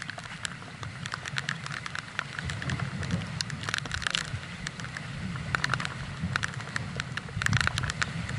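Gusty wind rumbling on the microphone under an irregular patter of sharp ticks, thickest about four seconds in and again near the end.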